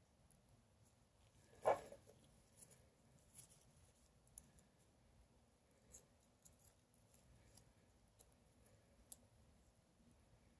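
Faint scattered clicks and ticks of steel insect pins being handled and pushed into a mounting board by gloved fingers, with one louder knock a little under two seconds in.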